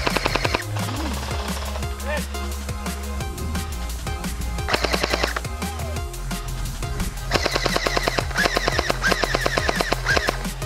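Bursts of rapid automatic fire from an airsoft rifle: a short burst at the start, another about five seconds in, and a longer string of bursts in the last three seconds, over electronic background music with a steady bass.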